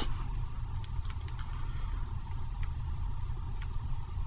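Steady low hum of the recording setup, with a few faint, short clicks as dots are tapped onto the drawing.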